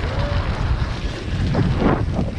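Wind buffeting the microphone of a camera on a moving bicycle, a steady low rumble with a brief louder swell near the end.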